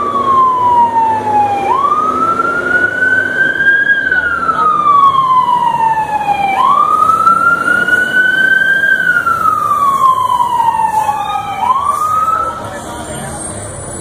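Emergency vehicle siren wailing, with a slow rise and fall in pitch about every five seconds. Near the end it gives two short rising whoops and then stops.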